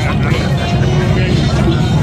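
Loud, steady low rumble of motorcycle engines, mixed with crowd voices and music.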